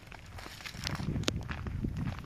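Footsteps walking through dry fallen leaves, an irregular run of crunching steps.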